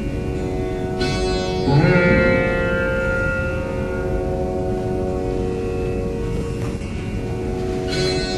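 Rudra veena playing a slow alaap in raga Jaijaiwanti. A string is plucked about a second in and pulled into a slow gliding bend (meend) that settles into a long held note over a steady ringing drone. A fresh pluck comes right at the end.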